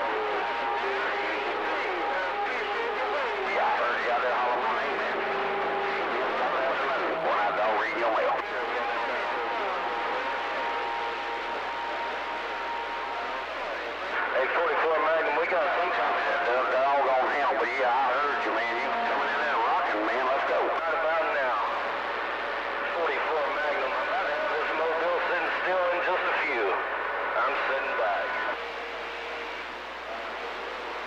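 CB radio receiving skip: garbled, overlapping voices of distant stations through static, with several steady whistling tones at different pitches coming and going.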